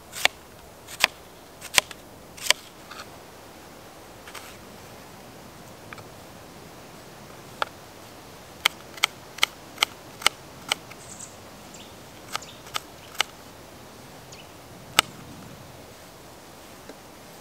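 Knife chopping an onion on a plate: sharp, separate knocks of the blade striking the plate. There are a few strokes at the start, then a pause, then a quicker run of strokes in the middle and a few more near the end.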